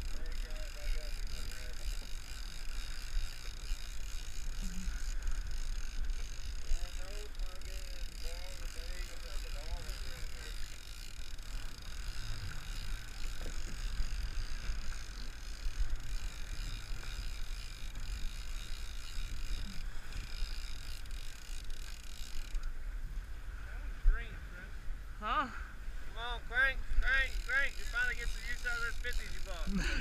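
Steady wind and water noise on a boat at sea, with people's voices and laughter breaking in over the last few seconds.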